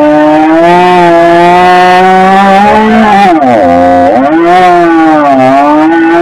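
Husqvarna 562 XP two-stroke chainsaw running flat out while cutting through a log. Its engine pitch sags sharply about three and a half seconds in and again near five and a half seconds as the chain loads up in the wood, then climbs back.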